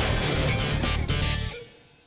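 Cartoon score music led by a strummed electric guitar, playing a dramatic face-off cue that cuts off about one and a half seconds in and fades almost to nothing.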